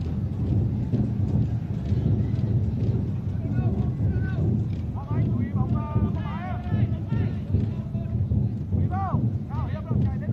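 Football stadium crowd: a steady low rumble of many people, with individual fans' shouts and calls rising over it from about four to seven seconds in and again near the end.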